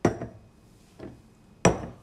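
Hard objects knocked on a table: two sharp knocks with a short ring, the second about a second and a half in, and a faint tap between them.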